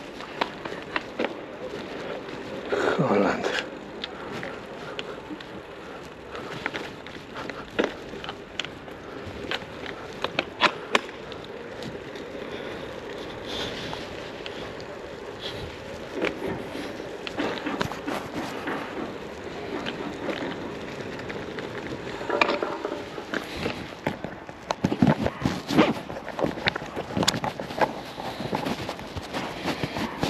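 Bicycle rolling over wet pavement and brick paving: steady tyre noise with frequent irregular rattling clicks.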